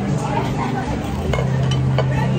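Restaurant din: background music with held bass notes, voices chattering, and a couple of light clinks of tableware.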